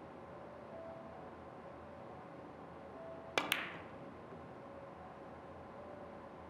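A three-cushion billiard shot: two sharp clicks in quick succession about halfway through, the cue tip striking the cue ball and the ball clicking off another ball, the second click ringing briefly.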